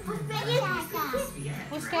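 Voices of young children talking and calling out as they play.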